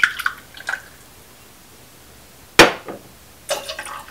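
Simple syrup trickling briefly from a bottle's pour spout into a metal jigger in the first second. About two and a half seconds in there is one sharp clink, the loudest sound, and near the end the syrup splashes from the jigger into a metal cocktail tin.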